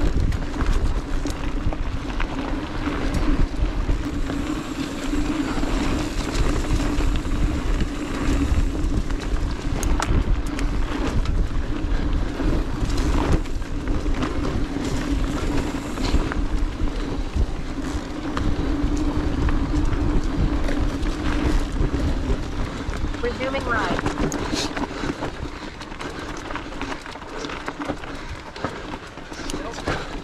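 Mountain bike riding noise picked up by a handlebar-mounted camera: tyres rolling over dirt and leaf litter, with small rattles and knocks over bumps and wind on the microphone. A steady hum runs underneath and fades out about three quarters of the way through.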